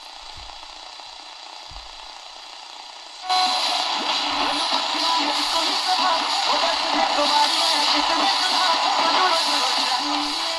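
Static hiss from a Horologe HXT-201 pocket AM/FM radio's speaker as it is tuned at the bottom of the AM band. About three seconds in, it jumps louder as a distant station near 530 kHz comes in: music and voice under heavy static.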